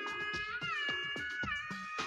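Instrumental backing music: a steady beat of about four strokes a second under a high, sliding lead melody.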